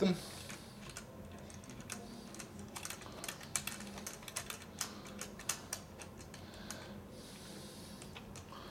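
Small, light clicks and ticks of metal hardware being handled by hand: a blind nut and its screw being located through a stainless lever handle's rose. The clicks come irregularly and are busiest in the middle few seconds.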